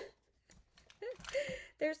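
A woman's voice: a laugh trailing off, then breathy murmuring and the start of speech, with faint paper-handling ticks in the short gap between.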